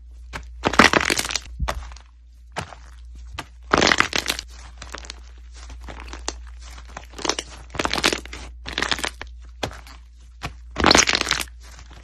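White slime squeezed and stretched by hand, making bursts of crackling and popping. The loudest bursts come about a second in, near four seconds and near the end, with a low steady hum underneath.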